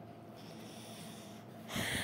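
Quiet room tone, then near the end a loud, noisy breath drawn close to the microphone just before speaking.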